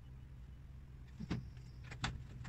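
Handling noise from a flat-pack cabinet being assembled: a short knock a little past halfway and another at the very end, with a faint thin high tone between them, over a low steady hum.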